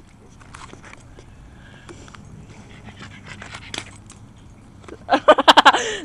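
Faint handling and footstep noise, then about five seconds in a burst of loud, breathless laughing and yelling from a boy.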